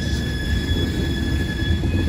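Loaded coal hopper cars rolling past close by: a steady rumble of wheels on rail with a thin, steady high-pitched wheel squeal above it.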